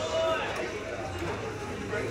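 Indistinct voices talking, with no music playing.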